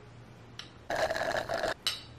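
A sip of iced coffee drawn through a metal straw: a slurping sound lasting under a second, then a brief second slurp.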